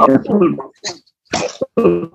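A man's voice over a video call: speech trailing off in the first moment, then three short, separate vocal bursts.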